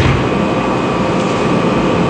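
Room air conditioner running, a steady even rush of noise with a couple of faint steady tones, loud enough to swamp the room's microphones.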